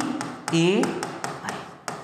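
A rapid run of sharp taps on a hard surface, several a second, under a man's voice saying one vowel sound.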